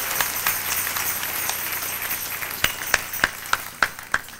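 A congregation applauding, the clapping fading gradually and thinning out to a few separate claps over the last second or so.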